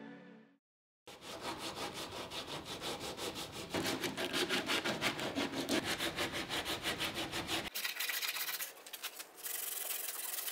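Wood rasp being worked by hand over a wooden spoon blank, scraping in quick, even back-and-forth strokes. The strokes turn lighter and higher-pitched over the last two seconds.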